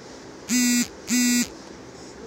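Two short, identical buzzing tones, each about a third of a second long, with a brief gap between them.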